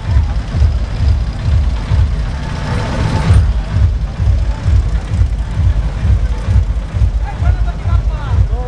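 Loud DJ sound system playing a heavy bass beat, about two beats a second, with crowd voices over it and a brief rush of noise about three seconds in.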